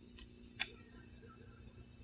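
Quiet room tone with a low steady hum, broken by two brief faint clicks, one just after the start and one about half a second in.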